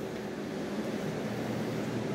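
Steady, even hiss and hum of wall air-conditioning units running in a small tiled room.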